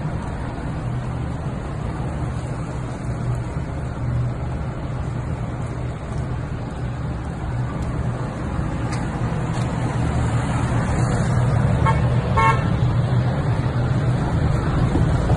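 A car's engine running and drawing nearer, growing louder over the last few seconds, with two short horn toots about twelve seconds in.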